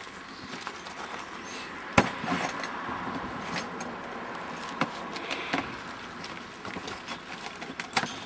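Rescue tools being handled on a tarp over gravel, with a few sharp clicks and knocks, the sharpest about two seconds in, over steady outdoor background noise.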